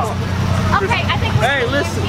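Voices of several people talking over the steady low hum of a car engine idling.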